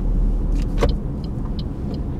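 Steady low rumble of a car's engine and tyres heard from inside the cabin while driving slowly, with one short click a little under a second in.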